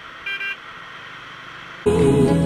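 A vehicle horn gives one short toot, about a third of a second long, over faint steady road noise while riding behind a truck. Just before the end, loud background music cuts in abruptly.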